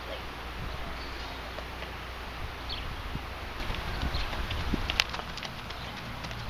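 A horse's hooves stepping on soft dirt: a few faint thuds over a steady low outdoor rumble, with one sharp click about five seconds in.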